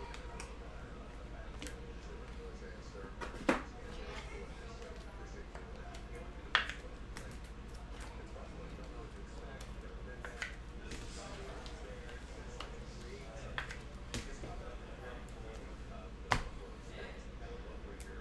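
Trading cards and foil packs being handled on a table: about half a dozen sharp snaps and clicks a few seconds apart, over a steady low hum.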